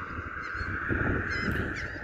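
Outdoor ambience of distant birds calling, with two faint short calls over a steady, even chorus and a low rumble of wind.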